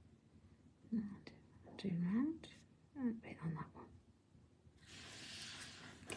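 A quiet voice murmuring without clear words in two short stretches, then a soft rustling hiss near the end.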